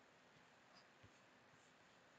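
Near silence: faint room tone, with one very faint low knock about a second in.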